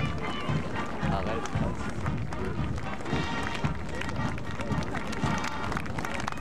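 Voices talking close to the microphone over band music, with an uneven low rumble of wind or handling on the camcorder microphone.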